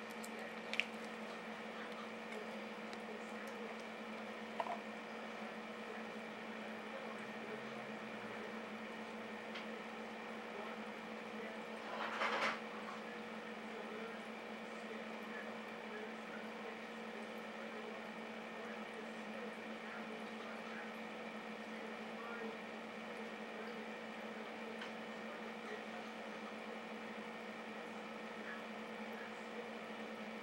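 Steady hum of aquarium equipment running, with faint water hiss. There are a couple of small clicks early and a brief louder burst of noise about twelve seconds in.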